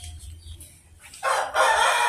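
A rooster crowing, one long loud call starting a little past halfway through.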